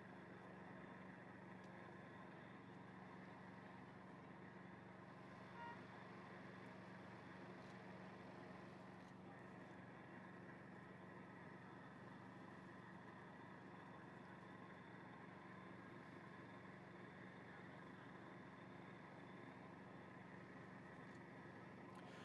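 Near silence: a faint steady hum of background noise, with one small soft sound about six seconds in.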